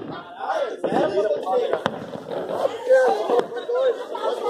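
Several people's voices, talking and calling out over one another, with a single sharp click a little under two seconds in.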